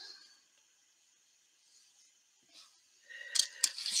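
Near silence for most of it, then a few light clicks and rustles near the end as a plastic needle sizer and needle packet are handled.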